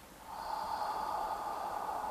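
A man's long, steady exhale close to a lapel microphone: a slow, controlled qigong out-breath that begins a moment in and runs past the end.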